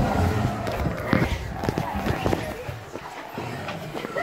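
Indistinct voices with scattered short knocks and scuffs, quieter around three seconds in.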